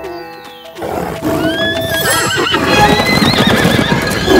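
Cartoon horses stampeding past: a rumble of galloping hooves comes in about a second in, with wavering whinnies over it, after a short stretch of music.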